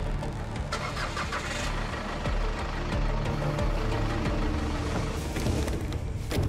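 A motor vehicle's engine starting and running as the vehicle pulls away, with music underneath.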